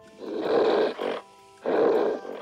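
Leopard growling twice, each rough growl lasting about a second, over faint sustained musical tones.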